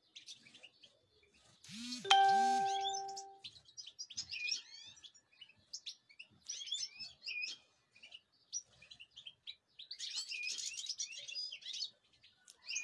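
Goldfinches twittering and chirping in an aviary throughout, with a short ringing chime about two seconds in that is the loudest sound.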